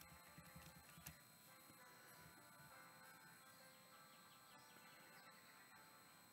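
Near silence: faint room tone with a steady hiss, and a few soft clicks in the first second.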